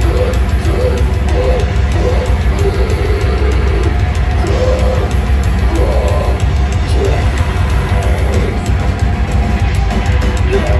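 Heavy band playing live through a club PA: distorted guitars and bass over fast, dense drumming and cymbals, with a heavy low end and no let-up.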